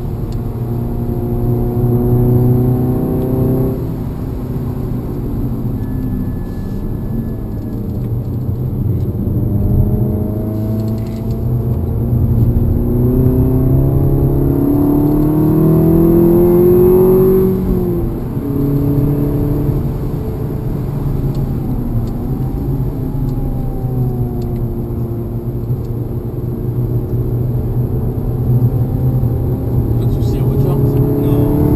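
Seat Leon Cupra 280's turbocharged 2.0-litre four-cylinder engine heard from inside the cabin, pulling hard and easing off through the gears and corners, its pitch rising and dropping again and again. It is loudest about 17 seconds in, near the top of a long climb, then falls away sharply.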